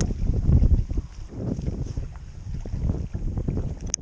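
Wind buffeting the microphone in uneven low gusts, with a short sharp click just before the end.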